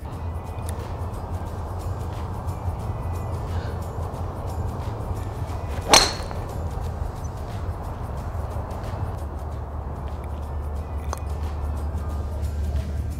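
A Srixon driver striking a golf ball off a hitting mat: one sharp crack about six seconds in, over steady background music.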